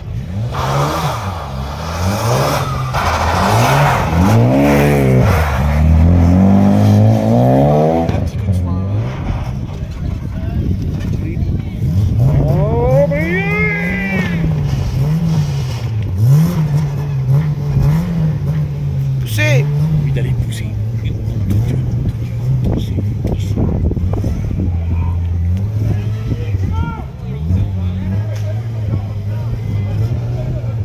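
Rally car engine revving hard in repeated rising and falling surges, then revving again and again as the car sits stuck in deep snow with its wheels spinning, before settling to a steady run near the end.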